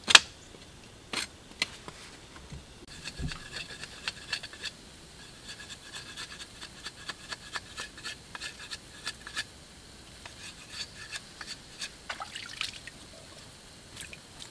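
Machete blade shaving a thin stick, a sharp knock at the start, then a long run of quick short scraping strokes, several a second, that stop near the end.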